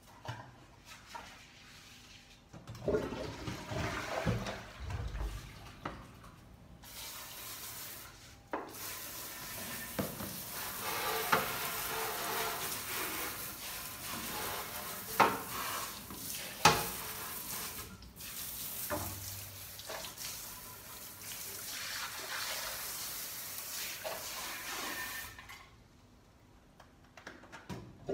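Toilet brush scrubbing inside a water-filled ceramic toilet bowl: uneven sloshing and swishing of water with a few sharp knocks of the brush against the porcelain, in a long stretch after a short first bout.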